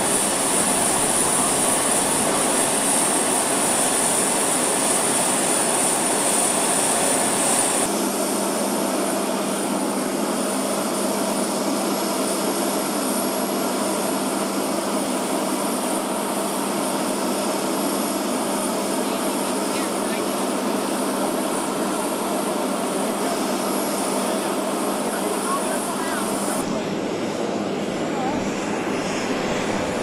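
Jet aircraft turbine running on an airfield ramp: a steady high whine over a broad roar. The sound changes abruptly about eight seconds in and again near the end, the whine fading in the last few seconds.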